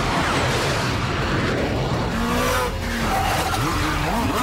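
Action-movie battle sound mix: cars and tyre skids over a dense, steady wash of effects, with a few short gliding tones in the middle.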